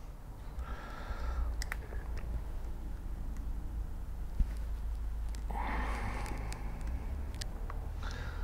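A few faint, sparse clicks and taps of small steel parts as the two halves of a Boxford AUD lathe apron's cross-feed clutch are wiggled into place by hand, over a steady low hum.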